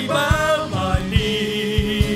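Live worship song: a male lead vocal with backing singers, over electric bass and guitar and a steady low beat of about two and a half thumps a second.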